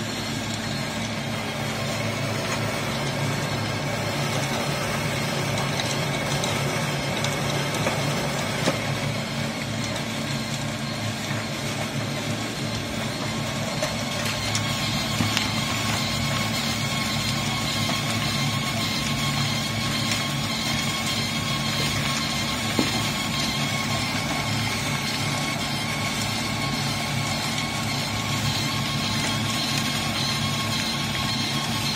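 Coal dust pellet press running steadily: a constant machine drone with several steady tones, broken by a few sharp clicks.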